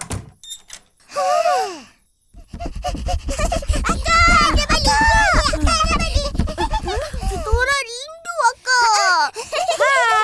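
High-pitched cartoon children's voices calling and exclaiming in gliding tones, with no clear words. From about two and a half seconds in to near eight seconds there is a fast, low, even patter beneath them.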